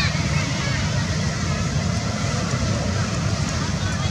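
Steady low rumble of wind buffeting the microphone outdoors, with a brief high squeaking call right at the start, likely from the infant macaque.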